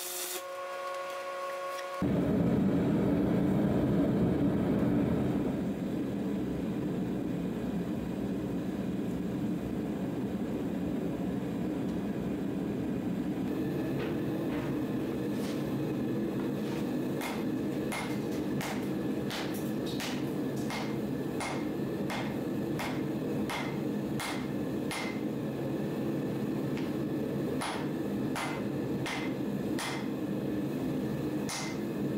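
A humming tone for about two seconds gives way abruptly to a forge burner running with a steady, low rush. From about halfway on, sharp metallic ticks come irregularly, one or two a second, over the burner.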